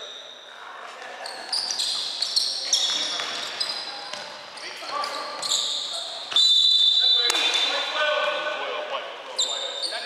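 Basketball game on a hardwood gym floor: sneakers squeaking in short high chirps as players cut and jump, with a ball bouncing, in a large echoing hall. A longer, louder high squeal about six seconds in is the loudest sound.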